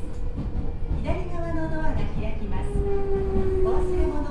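Running noise of a Meitetsu 4000 series electric train heard from inside the car: a steady low rumble from the wheels and track, with the whine of the traction motors over it, whose pitch falls slightly in the second half.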